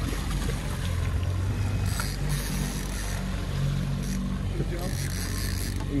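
Boat engine running steadily at trolling speed, a low drone under wind and water noise, with two brief louder hissy stretches about two and five seconds in.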